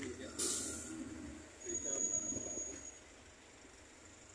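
Road traffic passing on a busy town street, with voices in the background. A short hiss comes about half a second in, and a thin high whistling tone is held for about a second near the middle.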